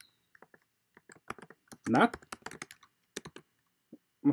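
Typing on a computer keyboard: a run of quick, irregular key clicks as a short phrase is typed.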